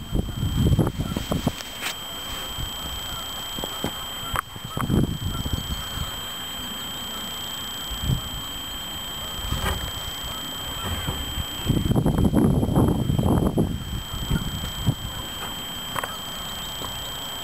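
Wind gusting against a camera's microphone, in uneven bursts of low rumble that come strongest at the start and again near the end, over a faint steady high whine, with a few sharp clicks.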